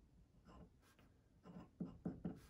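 Faint scratching of a glass dip pen's nib on paper, a few short strokes as letters are written.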